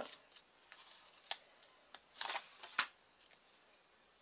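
Paper sticker sheet being handled as a sticker is peeled off its backing: a few faint, short crinkles and ticks, a brief rustle a little past two seconds and a sharp tap just after it.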